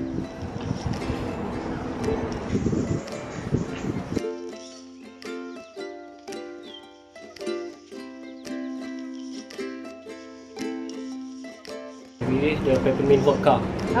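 Background music: a light plucked-string tune, ukulele-like. For about the first four seconds it plays over rustling outdoor noise, then it is heard clean, and near the end room noise and a man's voice come back.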